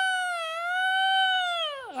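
A long, high-pitched wailing call held on one note. It dips briefly about half a second in and falls away near the end.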